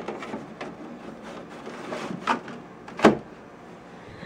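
Plastic air-conditioner dust filter being handled and fitted against the unit: a few light plastic clicks and knocks, the loudest about three seconds in, over a steady hiss.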